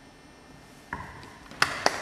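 A short quiet stretch after the music ends, a single short sound about a second in, then audience applause starting with a few scattered claps near the end.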